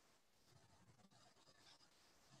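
Near silence: faint room tone over a video-call microphone, with a few faint rustles and small clicks.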